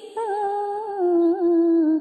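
A single voice holding a long, wavering sung note in Vietnamese verse chanting. There is no clear words, and the pitch steps down about halfway through and wobbles near the end.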